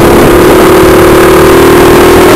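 Small 48 cc four-stroke engine of a mini bobber chopper running under way, holding a steady pitch, over a low rumbling noise.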